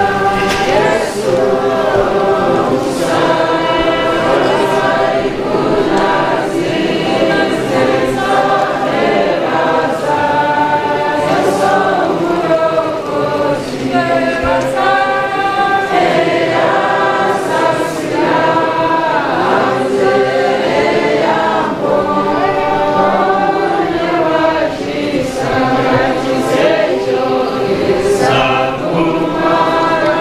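Congregation of many voices singing a hymn together, one continuous sung passage.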